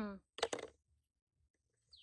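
A person's drawn-out hum fading out at the start, then a short burst of clicks and hiss about half a second in. One brief falling bird chirp comes near the end.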